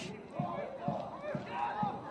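Indistinct shouts and chatter of voices from players and spectators around a football pitch, short calls coming and going.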